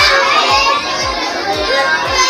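Loud children's voices over background music with a steady bass beat.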